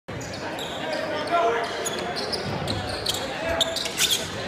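Basketball being dribbled on a hardwood gym floor during a game, with spectators talking in the stands.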